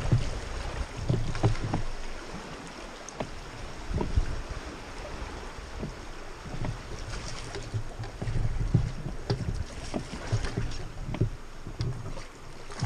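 Water sloshing and dripping around a rowed raft's oar blades and hull in calm water, with scattered small splashes and uneven low wind buffeting on the microphone.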